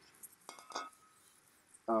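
A few faint clicks and a light glass clink about half a second in, with a brief thin ring: a beer glass being handled.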